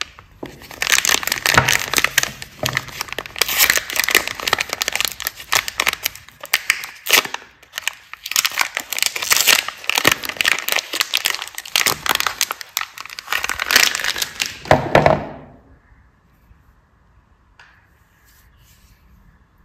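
Lux Purple Lotus soap wrapper being unwrapped by hand, a long run of crinkling and tearing as the wrapper is peeled off the bar. It stops a few seconds before the end.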